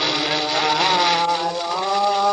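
Old 78 rpm record of Sindhi music playing on a His Master's Voice portable wind-up gramophone: sustained notes that slide from one pitch to the next twice, over steady record surface hiss.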